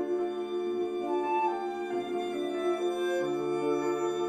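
Live chamber quartet of violin, alto saxophone, flute and grand piano playing together, with held notes in several overlapping lines that shift about once a second.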